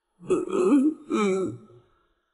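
A man's distressed voice making two short whimpering cries with wavering pitch, the first a little under a second long and the second shorter.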